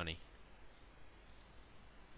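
Faint computer mouse click over quiet room tone.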